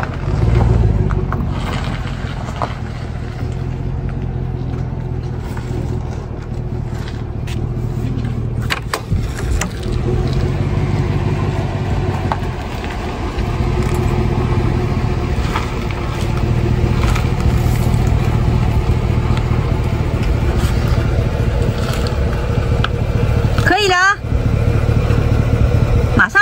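GMC Sierra pickup's engine running at low speed while the truck is slowly manoeuvred into a parking spot, a steady low hum.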